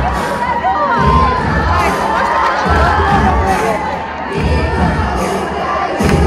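A large crowd of young people shouting, whooping and cheering together, with many voices overlapping.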